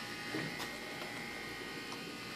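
Room tone with a steady faint electrical hum, and a faint tick or two.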